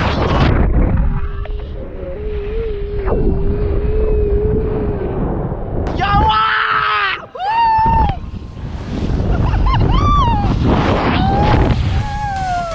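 Wind rushing and buffeting the microphone of a rider sliding down a zipline, with a steady low hum through the first half. The rider yells and screams with excitement several times in the second half.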